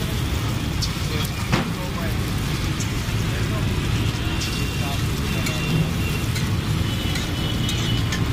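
Street ambience: a steady traffic rumble and background voices, with egg batter frying on a hot flat iron griddle and a sharp click about one and a half seconds in.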